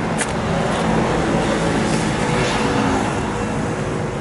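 Steady road traffic noise from passing vehicles, a little louder in the middle.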